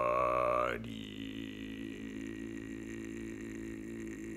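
Man singing unaccompanied: a held note with vibrato breaks off about a second in, and a long, low, steady note follows in his voice.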